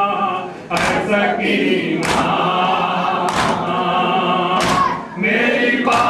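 Men chanting a Shia noha (mourning lament) in chorus, with unison matam strikes, hands beating on chests, landing together about every 1.3 seconds and keeping the beat.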